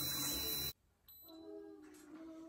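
A steady breath blown into a handheld BACtrack breathalyzer for under a second, cut off suddenly. Faint held tones follow.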